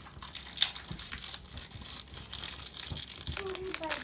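Foil wrapper of a jumbo pack of Prestige football cards crinkling and crackling as it is handled and torn open, with one sharper crackle about half a second in.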